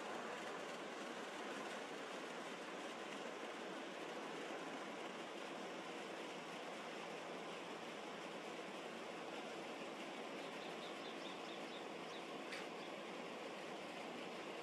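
Steady, faint hiss-like background noise that does not rise or fall, with a few faint high chirps near the end and one sharp click shortly before the end.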